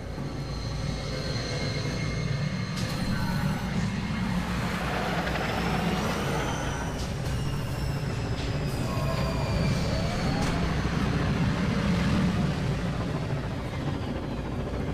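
Sound-designed sci-fi city ambience: a steady low rumble with hovering vehicles passing by, their whines gliding up and down in pitch.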